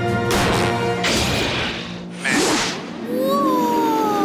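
Cartoon sound effects for a launch: a mallet whack followed by a long rushing whoosh of air, another burst, then a falling whistle near the end, over background music.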